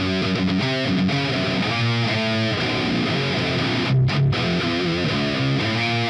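Distorted electric guitar playing a metal rhythm riff, the chords changing every half second or so.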